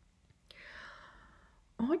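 A woman's soft, breathy whisper about half a second in, then her voice starts speaking near the end.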